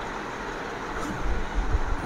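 Steady background hiss, with soft cloth rustling and a few low handling bumps in the second half as a lawn fabric piece is unfolded and handled.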